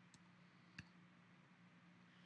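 Near silence with a single faint computer mouse click about a second in, advancing the presentation slide.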